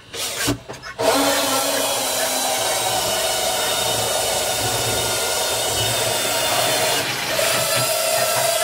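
Cordless drill boring a hole through the top of a plastic barrel. A couple of short trigger blips in the first second, then the drill runs steadily from about a second in, easing briefly near the end before running on.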